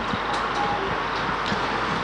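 Steady outdoor background noise with no distinct event, heard in a pause between a race caller's lines, with a faint click right at the start.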